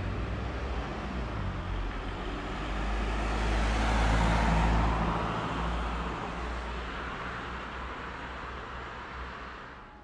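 A car driving past on the street, its tyre and engine noise swelling to loudest about four to five seconds in, then fading away.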